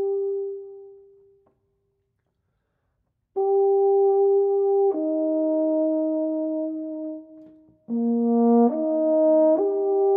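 Solo euphonium: a held note fades away over the first second and a half, and after about two seconds of silence the player comes in again with a string of sustained notes, changing pitch several times near the end.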